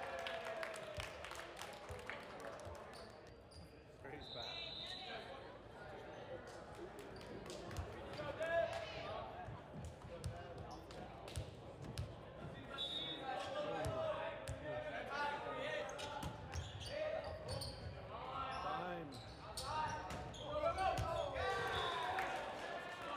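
Indoor volleyball play echoing in a gym: players calling and shouting, with repeated sharp thuds of the ball being hit. A short referee's whistle sounds about four seconds in and again briefly around thirteen seconds.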